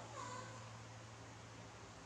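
A baby macaque's short, faint whining call falling in pitch near the start, then a steady low hum.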